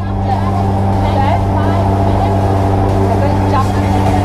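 Steady low drone of a propeller aircraft's engines heard from inside the cabin, an even hum with its overtones.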